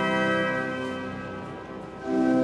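Pipe organ chord held and dying away into the cathedral's long reverberation, growing steadily fainter; a new, louder chord comes in right at the end.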